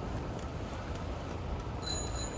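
Steady wind and rolling noise from riding a bicycle, then a bicycle bell rings briefly near the end.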